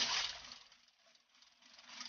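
Granulated sugar pouring into a stainless steel mixing bowl of egg whites: a hiss of falling grains. It starts sharply, tapers off, and swells again near the end.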